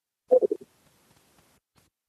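A brief low vocal sound, a few quick voiced pulses like a short hum or murmur from a man's voice, about a third of a second in; the rest of the moment is near silence.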